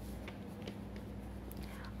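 Faint scratching and light ticks of a pen writing on paper, over a steady low hum.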